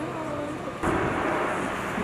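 A small quadcopter drone hovering, a steady whirring hum that starts abruptly less than a second in, at a cut, over faint voices and street noise.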